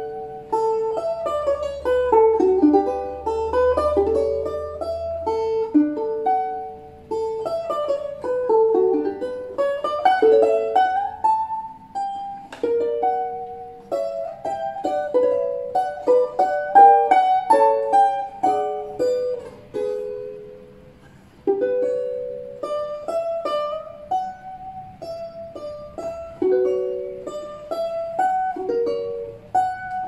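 Balalaika played solo: a melody of quick plucked and strummed notes, with runs up and down, pausing briefly about two-thirds of the way through before carrying on.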